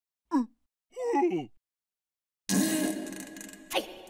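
A cartoon character's wordless vocal noises: a short grunt, then a wavering groan. About two and a half seconds in comes a sudden loud, noisy sound effect that fades away over about a second.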